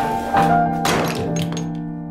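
Two dull thunks, about half a second and a second in, over slow piano music.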